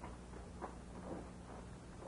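A few faint, soft footsteps on a floor, irregular and about half a second apart, over a steady low hum and hiss.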